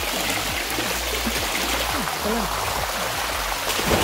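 Spring water running steadily over a small rock cascade into a pool, a continuous rushing hiss.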